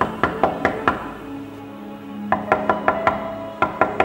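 A fist knocking on a wooden panel door: three rounds of quick raps, about five in the first second, about five more past the two-second mark, and two near the end, over soft background music.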